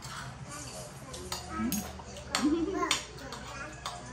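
Brief bits of speech with a few sharp clinks of metal spoons and forks against ceramic dinner plates during a meal.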